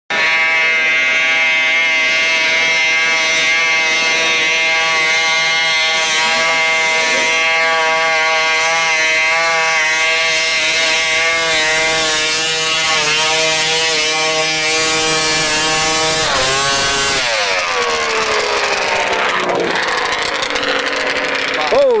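Snowmobile engine held at high revs with a steady whine as the sled climbs a steep snow slope. About three-quarters of the way through the revs drop, and the pitch falls away in a long downward glide as the engine winds down.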